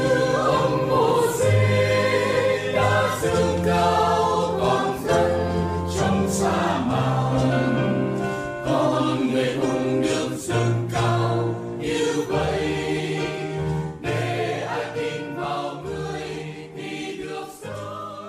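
Background music: a choir singing a sacred piece over sustained low accompaniment, fading out over the last few seconds.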